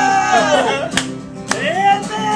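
A man singing loudly over an acoustic guitar: a long held note falls away about half a second in, then, after two sharp clicks, a new note rises and holds near the end.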